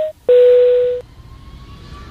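Airliner cabin chime sound effect: a two-note high-low 'ding-dong', the lower note held for most of a second, then a faint rising whine over a low rumble.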